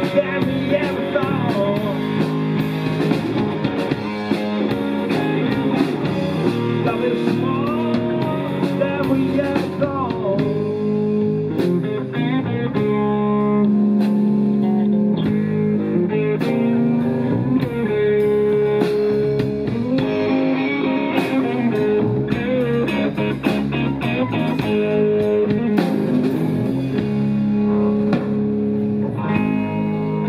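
Live rock band playing an instrumental passage between verses: electric guitar lines with bent, gliding notes over bass guitar and a drum kit.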